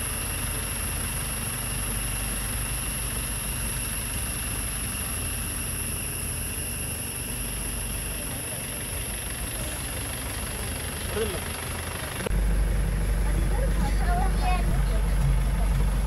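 Safari vehicle's engine running while it travels a forest dirt track: a steady low rumble that becomes noticeably louder about twelve seconds in.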